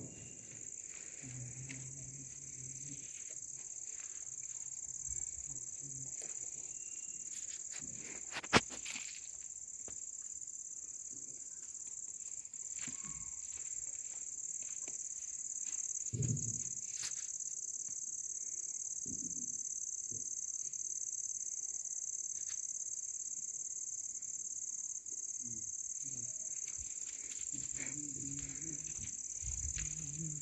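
Crickets chirring in a steady, high-pitched, unbroken drone. A single sharp snap about eight and a half seconds in.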